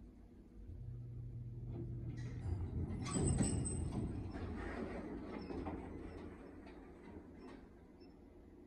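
Traction elevator car coming to a stop at a floor, with a low hum and then its doors sliding open. The rumble is loudest about three seconds in and then fades.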